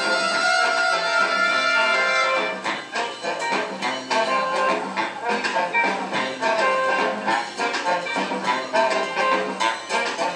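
Big band playing a Latin-jazz arrangement: the brass and saxophones hold a long chord for about the first two and a half seconds, then the band drops into a rhythmic Latin groove over the percussion.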